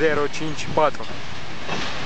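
Wagons of a long freight train rolling across a steel truss bridge, a steady loud noise with no distinct rhythm.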